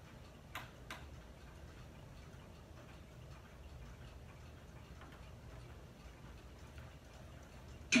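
Quiet room tone with a faint low hum, broken by two small clicks about half a second apart near the start.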